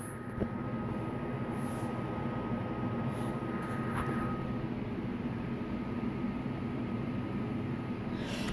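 Steady low hum and hiss of background noise, with a faint thin high tone that stops about halfway through.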